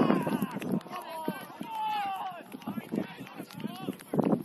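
Several voices shouting and calling out at once during a football match, overlapping, with one long falling call near the middle.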